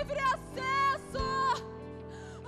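Live worship band playing a slow song: sustained low chords with guitar, and a singer holding three short notes over them.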